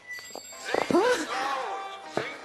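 A drawn-out spoken 'Oh' over background music.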